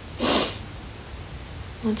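A woman sniffs once through her nose, a short breathy burst about a quarter second in, over a faint room hum.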